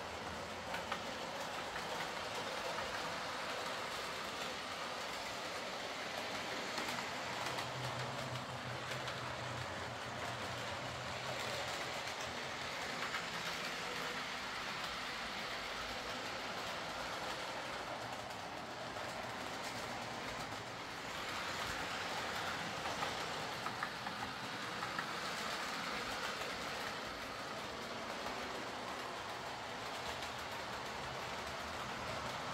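Two-car OO gauge Class 101 DMU model running along the track: a steady motor whirr, with the wheels clicking over rail joints now and then.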